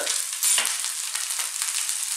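Cold cooked rice frying in hot oil in a frying pan over a very high heat: a steady sizzling hiss, with a brief click about half a second in.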